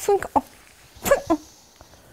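A person's voice making brief wordless vocal sounds: a short one at the start and another about a second in, with quiet between.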